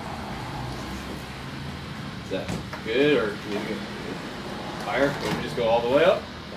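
Indistinct men's voices, twice, over a steady low background hum.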